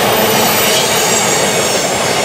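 Freight train of covered hopper cars rolling past: a steady, loud rush of steel wheels on rail, with a faint high squeal from wheel flanges on the curve.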